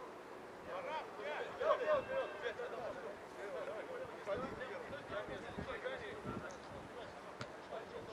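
Several men's voices calling and talking at once, distant and indistinct, with a few short dull knocks around the middle.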